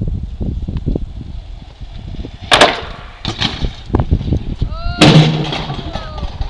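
A bicycle crashing onto pavement: a sharp clatter about two and a half seconds in, then the loudest impact about five seconds in. Low buffeting rumble on the phone microphone runs underneath.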